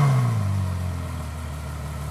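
Ferrari F12's V12 settling after a warm start: the engine note falls and quiets from its start-up flare into a steady idle about a second in. The quietness comes from the stock exhaust valves staying closed at low revs.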